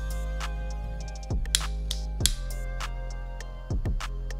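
Background music: sustained notes with a few sharp plucked strikes and low bass notes.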